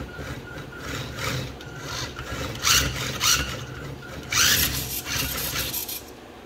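Small electric drive motor and plastic gears of a toy car converted to radio control, running in short raspy bursts as the throttle is worked from the transmitter: two brief bursts about two and a half to three and a half seconds in, then a longer one at about four and a half seconds.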